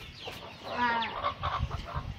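A chicken clucking, a few short calls near the middle.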